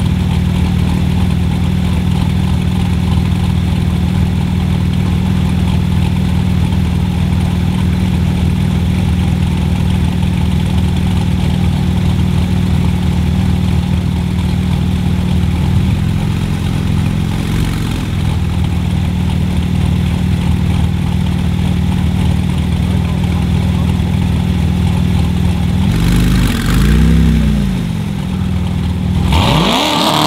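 Two cars idling at a drag-strip start line, a Chevrolet Corvette C7 Stingray's V8 and a Porsche 911, with a steady low engine note. Near the end one engine revs up and falls back once, and the revs start climbing again at the very end as the launch begins.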